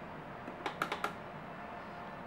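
A quick run of about five light, sharp clicks about half a second to a second in, from small hard items being handled on a tabletop.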